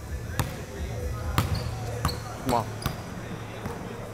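A basketball bouncing on a hardwood gym floor: four or five separate, sharp knocks roughly a second apart, over a low steady hum.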